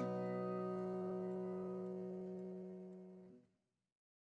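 Background music ending: a held chord rings on and fades away over about three seconds, then goes silent.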